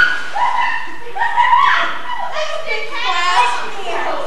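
Children's high-pitched squeals and shouts, several short calls rising and falling in pitch, with no clear words.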